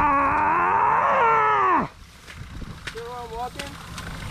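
A man's long, drawn-out vocal groan, held for nearly two seconds and dropping in pitch as it ends. A short, quieter vocal sound follows about three seconds in.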